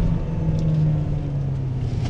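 Cabin sound of a Lexus NX200's naturally aspirated four-cylinder engine under way, a steady drone whose pitch slowly falls as the revs drop, over low road and tyre rumble.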